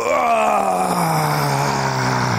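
A man's voice letting out one long, unbroken groaning moan that slides slowly down in pitch, an imitation of a man reaching climax.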